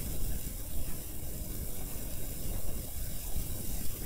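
Steady rushing background noise with an uneven low rumble, from the recording microphone with no one speaking.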